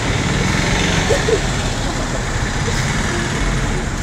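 Steady low rumble and hiss of outdoor ambience, like a vehicle engine running nearby, with a few faint voices about a second in.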